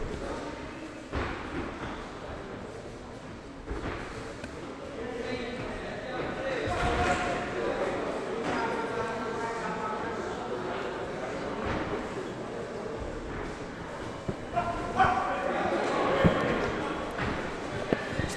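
Voices shouting in a large echoing sports hall, clearest twice, a few seconds in and again near the end, with a few short thuds from the boxing ring.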